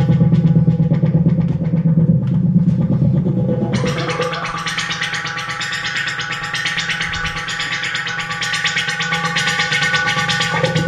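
Novation Supernova II virtual-analogue synthesizer running a fast arpeggiated pattern of rapid repeated notes. About four seconds in, the sound suddenly brightens as the upper range fills in and the heavy bass drops back.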